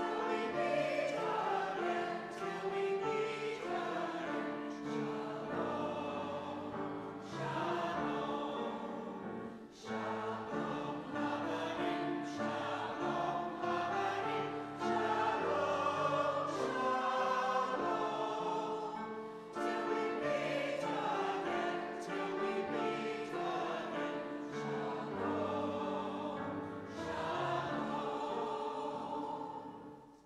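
Church choir singing a hymn, the voices held on long notes in phrases with brief pauses between them.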